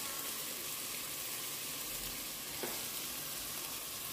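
Diced onions sizzling steadily as they fry in oil in a pot while red dendê palm oil is poured in, with one light tap about two and a half seconds in.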